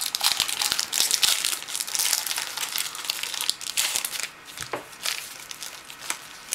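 Foil trading-card booster pack wrapper crinkling and tearing as it is pulled open by hand: a dense crackle of small crisp clicks for about four seconds, then quieter with only a few scattered clicks near the end.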